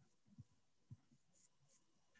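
Near silence: faint room tone with two or three soft, low knocks.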